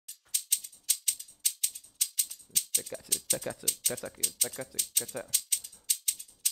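Looped shaker sample playing back in a beat: quick, evenly spaced shaker strokes, several a second, in a steady rhythm.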